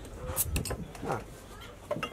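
A few light clinks of glassware set down on a table, then a short "ah" from a voice.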